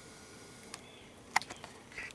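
A few short, sharp clicks and knocks over faint background hiss, the loudest about two-thirds of the way in.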